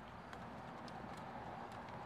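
Faint, scattered plastic clicks of a Tesla CCS Combo 1 adapter being pressed and wiggled loose from a DC fast-charger cable plug by hand, over a low steady hum.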